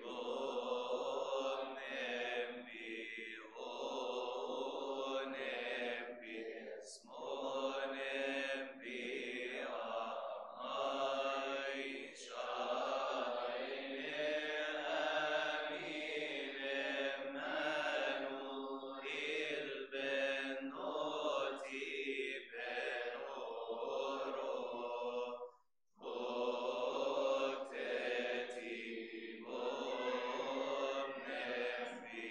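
Male voices chanting a Coptic Orthodox Holy Week (Pascha) hymn, long drawn-out melodic lines with a short break for breath about 26 seconds in.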